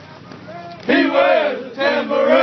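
A platoon of soldiers chanting a line of military running cadence in unison, repeating the leader's call, in two loud sung phrases starting about a second in.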